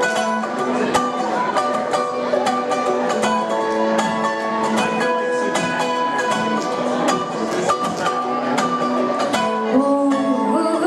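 Live bluegrass band playing an instrumental intro: a mandolin picking quick notes over a resonator guitar's held, sliding notes.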